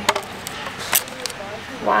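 Two sharp knocks of plastic caulk cartridges in a shrink-wrapped triple pack being picked up and handled, one at the start and one about a second later.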